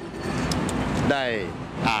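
A man speaking briefly into press microphones about a second in, over a steady low outdoor rumble, typical of street traffic.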